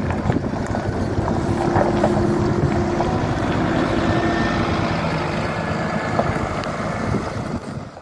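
Diesel engine of a double-decker bus driving off across a gravel yard, running steadily, with wind on the microphone. The sound fades out at the very end.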